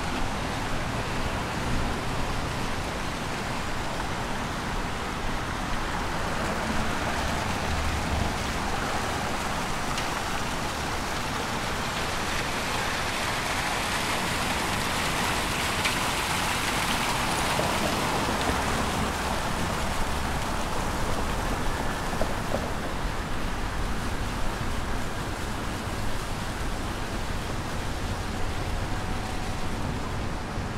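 Water splashing from a plaza sculpture fountain, growing louder to a peak around the middle and fading again afterwards, over a steady low rumble of city traffic.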